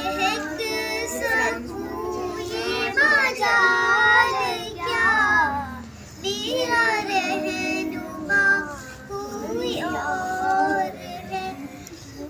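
Background song: a high voice singing a melody, with held notes that bend in pitch and a short pause about six seconds in.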